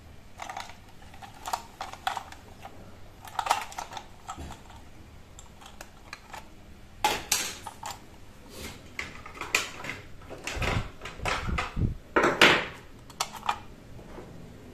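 A hard plastic toy being turned over and handled: irregular clicks, taps and plastic rubbing, with a cluster of louder knocks and scrapes near the end.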